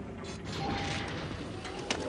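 Metal mechanism sound effect: clicking and rattling, with a faint steady tone through the middle and a quick run of sharp clicks near the end.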